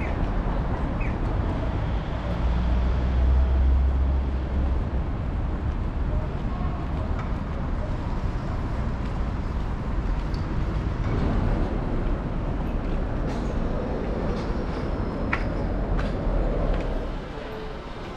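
City street traffic: a steady rumble of passing cars and buses, with a heavier low rumble about three seconds in and a few small clicks. The sound drops to a quieter level near the end.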